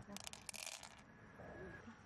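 A quick clatter of clicks, lasting about a second, as a handful of hard round beads is dropped onto other beads in an open mussel shell.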